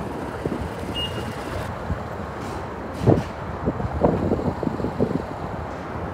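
City street traffic noise, steady, with one short high beep about a second in and a few low thumps between three and five seconds in.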